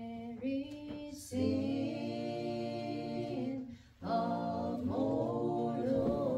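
Women's voices singing a hymn a cappella, holding long notes, with short breaks about a second in and again at about four seconds.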